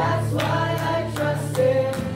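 Live worship band: several voices singing a praise song together over keyboard, guitars and drums, with sustained bass notes underneath.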